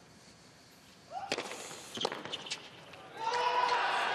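Several sharp tennis ball hits over about a second and a half, followed from about three seconds in by a tennis crowd cheering and applauding as match point is won.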